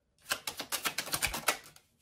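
A rapid run of papery clicks, about ten a second for roughly a second and a half, as a deck of tarot cards is shuffled between readings.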